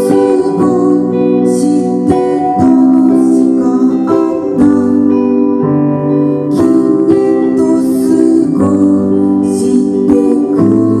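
Live music led by an electric guitar playing sustained chords that change every second or two.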